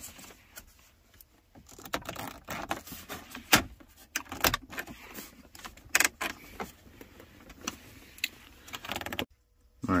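Plastic cup-holder trim panel of a BMW E70 X5 center console being pushed and worked into place by hand: a run of irregular clicks, taps and rattles, the sharpest about three and a half seconds in, as it rides up the ramps and snaps into the console.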